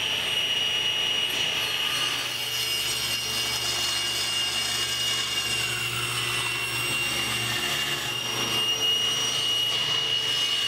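Table saw running with a steady high whine while ripping a strip of zebrawood, with a deeper note under it for several seconds in the middle of the cut.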